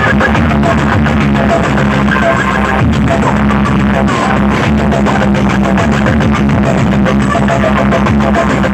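Very loud music blasting without a break from stacks of DJ loudspeaker boxes in a sound-box competition, with held bass notes running under it.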